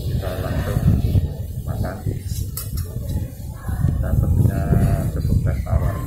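Indistinct talk over a steady low rumble.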